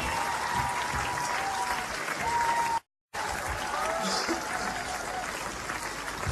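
Live concert audience applauding and cheering between songs, with a thin steady tone sounding over the crowd in the first half. The sound cuts out completely for a moment about halfway, then the applause carries on.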